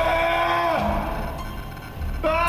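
A man's drawn-out frightened scream, held on one high pitch and dying away within the first second.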